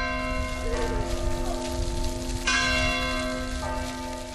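A church bell ringing, with long, sustained tones. It is struck once at the start and again about two and a half seconds in.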